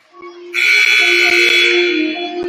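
Gymnasium scoreboard horn sounding loudly about half a second in and held for about a second and a half, over faint background music.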